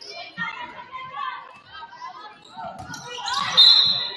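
A basketball dribbling on a hardwood gym floor amid players' shouts, then a short, loud referee's whistle blast near the end, stopping play.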